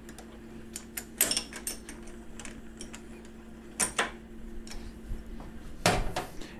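Small metallic clicks and knocks as an edge finder is fitted into the collet in a milling machine spindle by hand, heard as a few scattered sharp ticks with the loudest about a second in, about four seconds in and just before the end. A steady low hum runs underneath.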